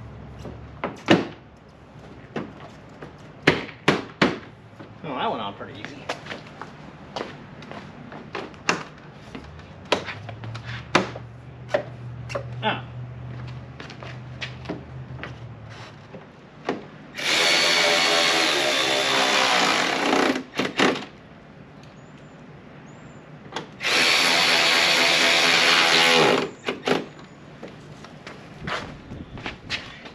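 Cordless power drill/driver running in two bursts of about three seconds each, around the middle and two-thirds of the way through, driving fasteners. Before them come scattered clicks and knocks of plastic trim and fasteners being handled at the truck's front end.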